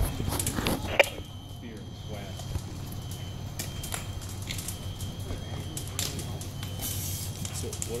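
Faint, indistinct voices over a steady low hum, with a few sharp clicks in the first second, the loudest about a second in.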